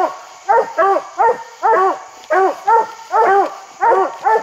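Coonhound barking treed, a rapid chain of loud, ringing barks about two or three a second, the sign that the dog has a raccoon up the tree.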